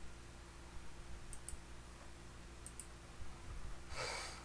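Faint computer clicks, two quick double clicks about a second and a half apart, over a low steady hum: the slides being advanced on the computer.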